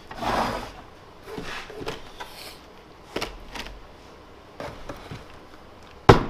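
Packaged drill bits in plastic sleeves handled and set down on a wooden workbench: a rustle at the start, then scattered light clicks and knocks as the packages are laid out.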